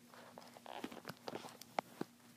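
Faint handling noise: small scattered clicks and rustles of fingers twisting a rubber band over a plastic loom, with one sharper click near the end, over a faint steady hum.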